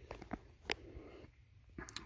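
Quiet room tone with a low hum and a few faint clicks: one sharp click about two-thirds of a second in and a couple of small ones near the end.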